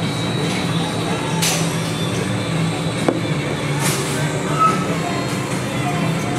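Bar-room background: a steady low hum with faint music and chatter. Two short hissing noises and a sharp click stand out, the click about three seconds in.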